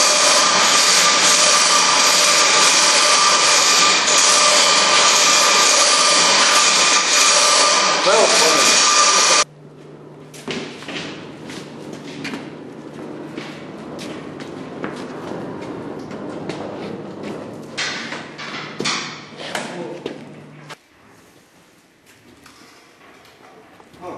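Loud machinery noise: a steady rushing sound with whistling tones that cuts off abruptly about nine seconds in. A low steady machine hum follows, with scattered knocks and clanks as the vacuum chamber is moved, and it stops suddenly a few seconds before the end.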